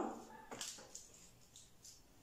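Faint, brief rustles of a hand handling cloth and a zipper on a sewing table, just after a woman's voice trails off with a rising tone at the start.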